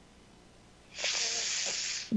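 About a second of near silence, then a man's breath with a hiss, lasting about a second.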